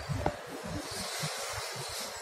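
Indoor mall ambience with low, uneven rumbling from a handheld camera being carried at walking pace. There is a single short click about a quarter second in.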